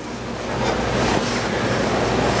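A steady rushing noise with a low rumble, the room's background noise brought up loud in a pause between spoken phrases.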